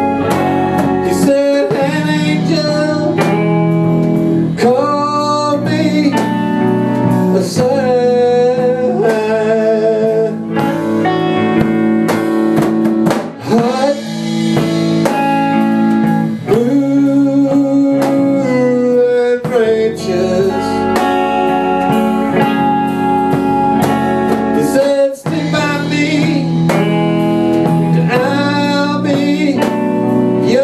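A small band playing a blues number live: two electric guitars, electric bass and drum kit, with a man singing lead over them.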